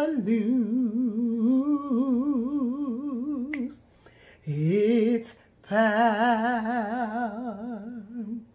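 A woman singing a gospel hymn unaccompanied, holding long notes with wide vibrato. A long held line is followed by a pause, a short note, and another long held note near the end.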